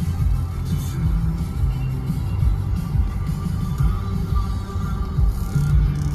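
Music playing on a car radio, heard inside the cabin of a moving car over a steady low road and engine rumble.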